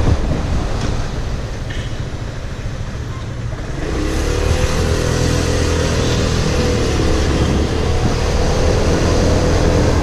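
Aprilia Scarabeo 200ie scooter's single-cylinder engine heard from on board, mixed with wind rushing over the microphone. The engine eases off over the first few seconds, then is opened up again about four seconds in and holds a steady pitch.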